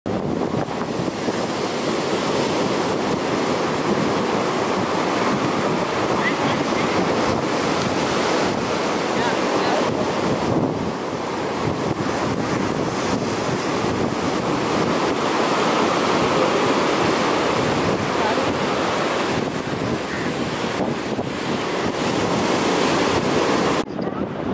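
Ocean surf: waves breaking and washing in as a steady rush, with wind buffeting the microphone.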